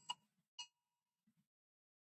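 Near silence, broken by two brief faint tone blips about half a second apart: the tail of a government storm-warning alert tone, chopped up by the call's audio processing.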